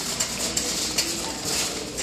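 Irregular light clicks and knocks of steps and phone handling while walking through a large store, over the store's steady background noise.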